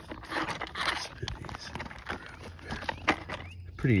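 Fingers picking and scraping matted grass out of a toy RC truck's wheel hub and axle: irregular scratching and rustling with small clicks.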